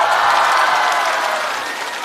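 Studio audience applauding and cheering. The applause peaks just after the start and slowly dies away.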